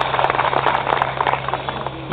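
Crowd applauding: dense, many-handed clapping over a steady low hum, fading slightly near the end.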